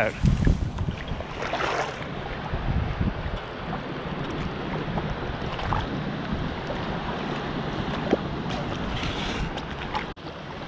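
Wind buffeting the microphone over moving shallow water, with a steady low rumble. There are two brief rushes of water, about two seconds in and near the end.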